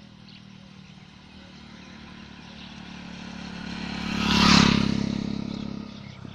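A motorcycle approaching and passing close by, its engine growing louder to a peak about four and a half seconds in, then fading away.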